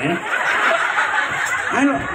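Laughter, a dense breathy burst lasting over a second, followed near the end by a man's voice starting to speak.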